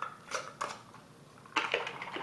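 Metal lid being screwed onto a glass mason jar holding water and soapberry shells: a few short scraping clicks, then a louder burst of rattle and slosh about one and a half seconds in as the jar is picked up to be shaken.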